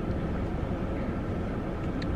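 Steady low rumble inside a car's cabin with the engine idling.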